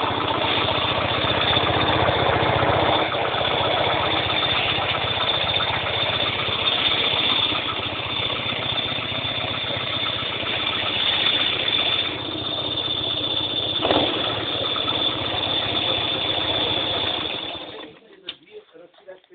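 A trike's Fiat 126p (Maluch) two-cylinder air-cooled engine running steadily, then cutting off just before the end.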